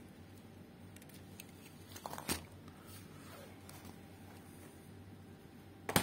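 A small amplifier circuit board with an aluminium heatsink being handled and turned over on a bench: light clicks and one louder knock about two seconds in, with a sharp click near the end, over a faint steady low hum.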